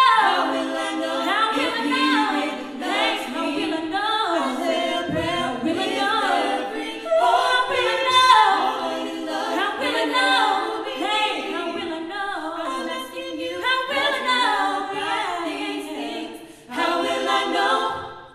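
Mixed vocal quartet of three women and one man singing a pop song a cappella through microphones, in close harmony. A final held chord starts near the end and cuts off.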